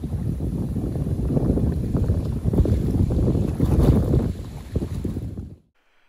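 Wind buffeting the microphone over water rushing and splashing past a moving boat on a lake. The rush is heaviest in the low end and cuts off suddenly shortly before the end.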